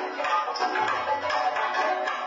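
Experimental electroacoustic music: a busy layer of short clicks and notes over a repeating loop, with a low hum coming in about halfway through as part of a pattern that recurs every two seconds.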